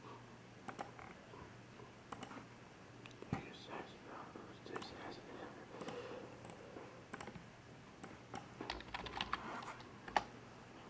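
Faint, irregular clicks and taps, with a quicker run of clicks near the end, over a faint voice.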